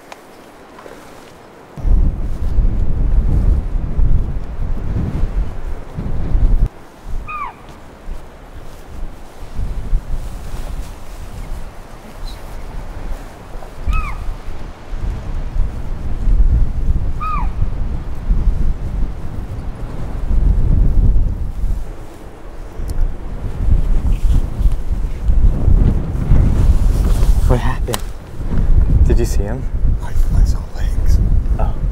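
Wind buffeting the microphone in gusts as a loud low rumble, with a bird giving a short downward-sliding call three times, a few seconds apart.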